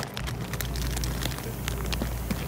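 Handling noise from a phone being moved around: a sharp click at the start, then a low rumble with scattered crackles and small clicks.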